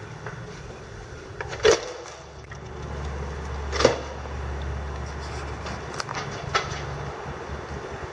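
A glass exit door's push bar clunks as it is pushed open, and a second knock follows about two seconds later as the door swings shut. A steady low rumble then sets in, with a few light clicks near the end.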